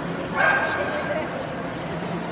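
Shetland sheepdog giving a single high bark about half a second in while playing tug with its handler.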